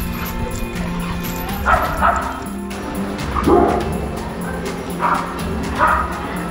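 A dog barking in several short bursts during rough play with another dog, over background music.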